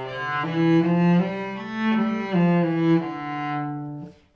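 Solo cello, bowed, playing a stepwise C major scale passage from C up to A and back down to D, with a new note about every half second. The last note is held for about a second and stops just before speech resumes.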